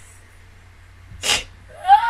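A woman's short, sharp breathy burst, then a high-pitched squeal that rises slightly near the end: an excited vocal reaction.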